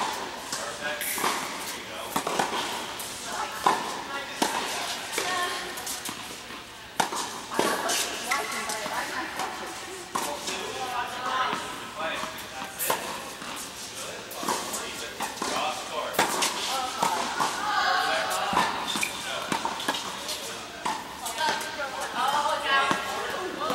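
Tennis balls struck by rackets and bouncing on indoor hard courts: sharp pops at irregular intervals, with indistinct voices of players in a large hall.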